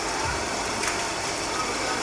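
Steady indoor shop ambience: an even air-conditioning hiss with no distinct events.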